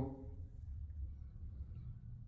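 Quiet indoor room tone: a faint, steady low rumble, with the last of a man's word trailing off right at the start.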